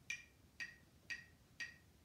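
Metronome ticking at 120 beats per minute: four short, sharp clicks, one every half second.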